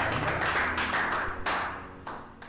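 Audience clapping, fading out, with a few separate claps standing out near the end.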